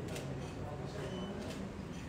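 Faint murmur of people's voices in the room, low and steady, with no single clear speaker.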